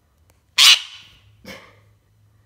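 Indian ringneck parakeet giving two harsh calls: a loud one about half a second in, then a shorter, quieter one about a second later. The calls are a display of anger at its owner.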